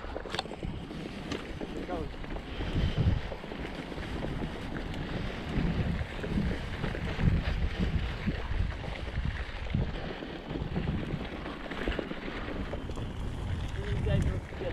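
Wind buffeting the microphone of a bicycle-mounted camera, over the uneven rumble of the bike rolling along a dirt trail.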